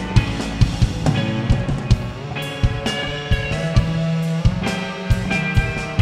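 Rock band playing live: drum kit keeping a steady beat under sustained electric guitar notes.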